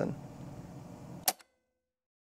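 Low steady room hiss, then a single sharp click a little over a second in, after which the sound cuts off to dead silence.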